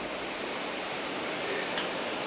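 Steady, even hiss of background noise, with a faint tick near the end.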